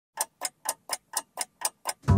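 Clock-like ticking: eight even, sharp ticks at about four a second.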